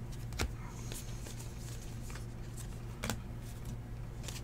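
A stack of 2015 Bowman Draft baseball cards being flipped through by hand, the cards sliding and clicking against each other, with sharper snaps about half a second in and about three seconds in. A steady low hum runs underneath.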